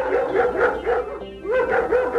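Caged dog barking in a rapid run of short, high barks, about three to four a second, with a brief gap around the middle.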